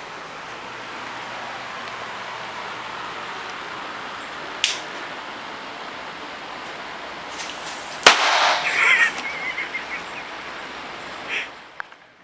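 A single firecracker going off indoors with one very loud, sharp bang about eight seconds in, followed by a brief cry. A sharp click comes a few seconds before the bang.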